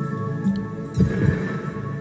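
IGT Star Goddess video slot machine playing its game music, with a deep thudding sound effect about a second in as a spin is played.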